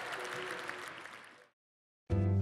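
An audience applauding, with faint music under it, fading out and cut off into silence about a second and a half in.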